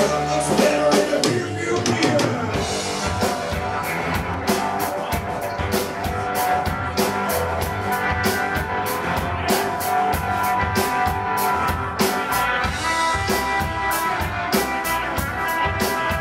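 Live rock-and-roll band of upright double bass, drum kit and electric guitar playing an instrumental passage with no singing, the drums keeping a steady driving beat.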